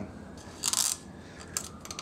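A plastic zip tie pulled tight through its ratchet lock around the timing belt and cam sprocket: a short zipping rasp a little over half a second in, then a few small clicks.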